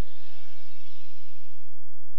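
Steady low electrical hum with a faint hiss over it; no speech.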